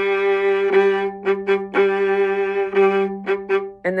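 Viola bowed solo, playing long held notes broken by a few short, quick notes, with a steady lower note sounding beneath them.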